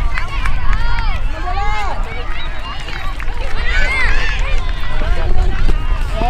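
Several sideline spectators and youth soccer players shouting and calling out at once, overlapping voices with no clear words, rising about four seconds in. A steady low rumble runs underneath.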